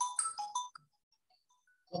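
Mobile phone ringtone: a quick melody of short electronic notes that plays, pauses, and starts again near the end.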